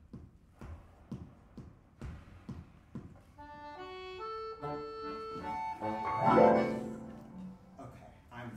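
Marimba notes struck one at a time, about two a second, then from about three seconds in an accordion enters with held reed tones that step between pitches, swelling into a loud full chord near six seconds and fading away.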